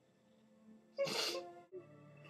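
A crying woman lets out one loud, wet sob through her nose about a second in, over soft background music.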